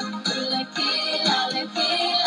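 Pop song with a girl singing the lead melody over a full backing track.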